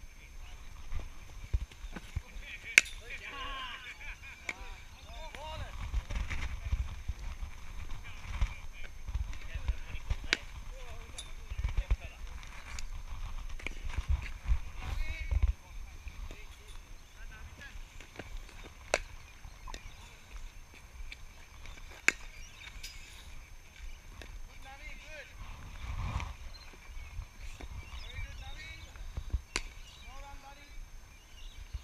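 Cricket balls being struck by bats in the practice nets: a series of sharp, isolated cracks, the loudest about three seconds in, over faint distant voices. A low rumble of wind on the microphone runs from about six to sixteen seconds in.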